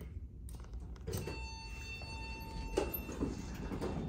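Montgomery Vector hydraulic elevator answering a hall call: a click about half a second in, then a steady tone that sounds for about a second and a half while the car doors slide open.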